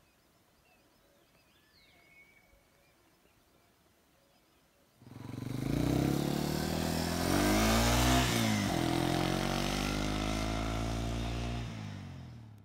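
A few faint bird chirps over quiet, then from about five seconds in a motor vehicle passing close on a gravel road. Its engine and tyres crunching on gravel are loudest around eight seconds in, with the engine note bending in pitch as it goes by, and ease off near the end.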